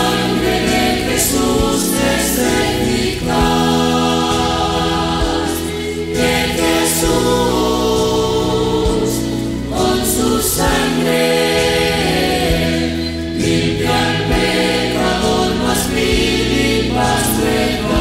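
Pentecostal church choir singing a Spanish-language hymn in sustained chords.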